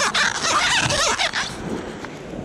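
Close rubbing and squeaking right on the camera as its lens is wiped clean, busy for about the first second and a half, then easing off.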